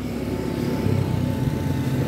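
A motor scooter passing on the street, its small engine running and growing a little louder.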